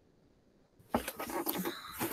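Digital silence, then just under a second in a microphone on a video call switches on: room noise with a knock and a few clicks and rustles of handling.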